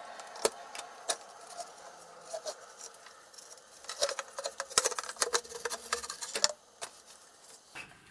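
Metal clinks, knocks and scrapes as the end cap and metal electronics chassis of an emergency radio beacon are worked loose and slid out of its metal tube, with a cluster of sharp clicks about halfway through.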